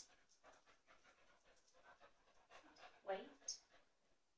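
A dog panting softly, with a short voice sound just after three seconds in.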